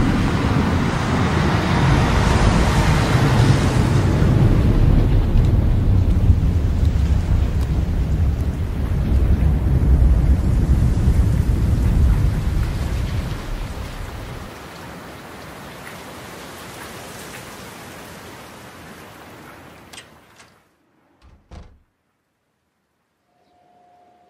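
Heavy rain with a long rolling rumble of thunder that dies away a little past halfway. The rain goes on more quietly, then cuts off suddenly, followed by two brief low thumps.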